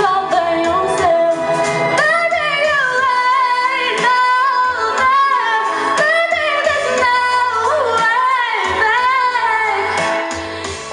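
A woman singing a pop ballad live through a microphone, holding long notes with vibrato over a steady low accompaniment.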